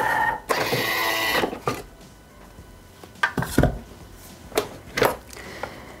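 Thermomix TM6 kitchen machine: a short beep, then about a second of motor whirring, followed by several clicks and knocks as the lid and the steel mixing bowl are handled and lifted out.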